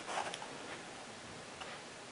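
A few light clicks and soft handling noise from a plastic ankle holster and its strap being handled, with a couple of small clicks in the first half-second and faint ticks near the end.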